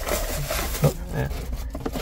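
Rustling of a cardboard box and a plastic-wrapped gift being handled and pulled from a paper gift bag, with a few short spoken exclamations over a steady low hum.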